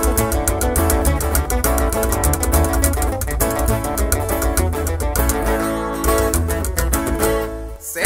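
Instrumental break in a Mexican corrido: quick plucked guitar runs over strummed guitar and a deep bass line, with a brief pause near the end.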